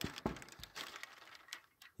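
Flimsy homemade wooden chicken-run door being worked by hand, giving a few faint, scattered knocks and rattles of loose boards and chicken wire against the post.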